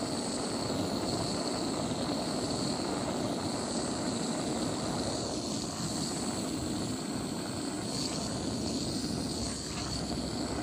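A small handheld gas torch on a hose extension, burning with a steady rushing hiss as its blue flame browns wet-stained wood.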